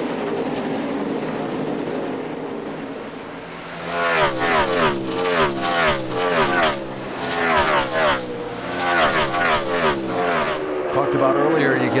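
NASCAR Cup cars' V8 engines racing past in a pack. From about four seconds in, several engines are heard rising and falling in pitch again and again as the cars brake, downshift and accelerate through the road-course corners.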